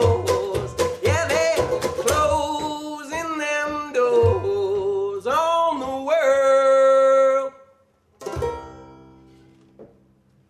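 Acoustic string band of archtop guitar, banjo and upright bass with a man singing. The steady strummed rhythm stops about two seconds in, the voice holds long closing notes over a few sparse chords until a little past seven seconds, and then one last chord rings out and fades.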